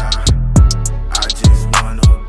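Instrumental stretch of a hip hop beat without rapping: two deep bass hits that each slide down in pitch, over quick hi-hats and a held melodic backing.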